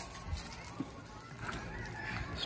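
Quiet background with faint bird calls.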